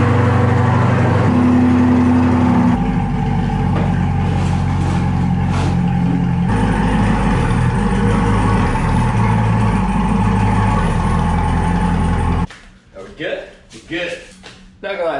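C8 Corvette's V8 engine idling with a low, steady note as the car creeps forward up onto ramps; the note shifts a couple of times, then the engine is shut off abruptly about twelve seconds in. It is being run at idle for about 20 seconds to return the oil to the dry-sump oil tank before the oil is drained.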